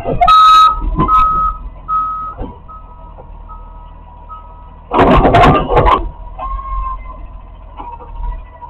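Garbage truck's automated side-loader arm tipping a recycling bin into the hopper over the truck's running engine: a string of warning beeps, a little under a second apart, fades out in the first half. About five seconds in a loud clatter comes as the bin is emptied.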